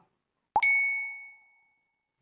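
A single bright ding, a chime sound effect of the kind used in a quiz to mark the answer being revealed. It strikes about half a second in and rings out, fading over about a second.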